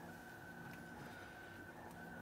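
Quiet room tone with a faint, steady high-pitched whine; the handling of the strings makes no distinct sound.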